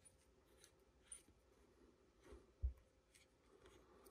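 Near silence with faint handling noises: light clicks and rubbing as the knurled screw of a hand-turned roll pin pusher tool is worked against a backwash valve piston, and a soft low thump about two and a half seconds in.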